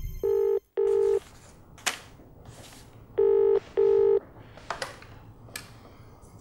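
Telephone ringing in a double-ring pattern: two short rings, a pause of about two seconds, then two more, each a steady low tone. A few faint clicks fall between the rings.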